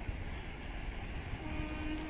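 A train horn sounds one short, steady note about a second and a half in, over a low rumble of wind on the microphone.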